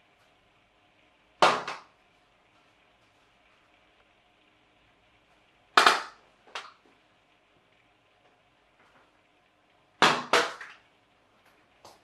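Paper hoop gliders landing close to the microphone with sharp papery taps: one about a second and a half in, another near six seconds with a lighter one just after, and a quick double tap near ten seconds, as a glider hits and bounces.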